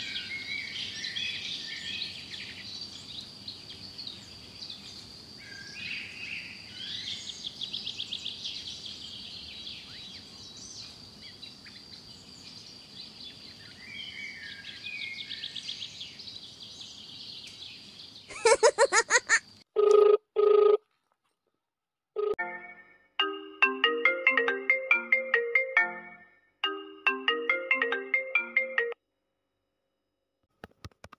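Outdoor ambience of birds chirping over a steady high-pitched insect drone. About 18 seconds in it cuts off abruptly and a loud electronic ringtone-style melody plays in short repeated phrases, separated by dead silence.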